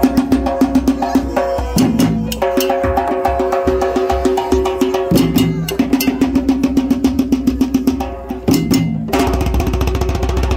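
Haitian Vodou hand drums, tall wooden drums with skin heads, played together in a fast, driving rhythm. Held pitched tones sound over the drumming, shifting pitch every second or two.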